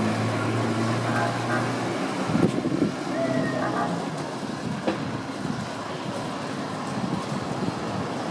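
Street traffic noise: a vehicle engine's steady low hum for the first two seconds, then fading away, leaving a general street noise.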